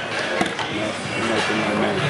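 Voices and general chatter in a large echoing hall, with one sharp click about half a second in.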